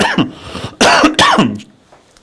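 A man coughing and clearing his throat in two loud bouts, the second about a second in.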